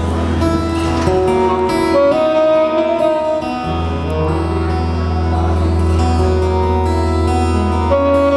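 Live amplified band playing a song intro led by acoustic guitar, with other instruments over a steady deep bass.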